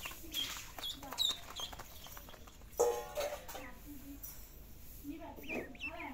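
Ducklings peeping in short, high cheeps, a cluster near the start and more near the end, with a brief louder voice cutting in about halfway through.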